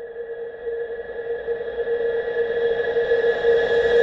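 Electronic riser: a steady drone of a few held high tones under a hiss that swells steadily louder, a build-up in the intro music.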